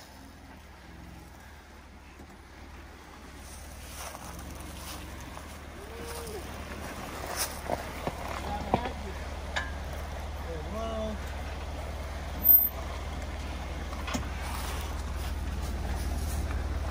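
Two-door Jeep Wrangler JK's engine running low and steady as it creeps into a river crossing, with the rush of water growing louder in the second half as the front wheels enter the river. A single sharp knock about twelve seconds in.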